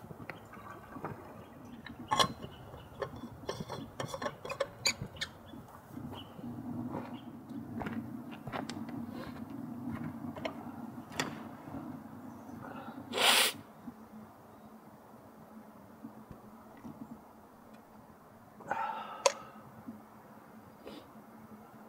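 Light clicks and taps of an AeroPress and insulated bottle being handled, then a steady low hum. A short loud noise about thirteen seconds in and another near the end.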